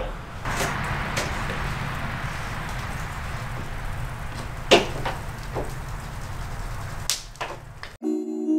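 A few light knocks and clicks from handling foam insulation sheets and tools on a trailer floor, the sharpest just before the middle, over a steady low hiss.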